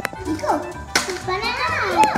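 Young children's voices chattering, with a couple of sharp plastic clicks, one near the start and one about a second in, as a plastic carry case's latch is snapped open.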